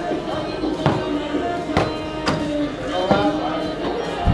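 A football being kicked and bouncing: four sharp knocks spread over about two seconds, over background music.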